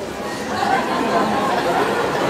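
A group of people chattering, with several voices overlapping and no one voice standing out.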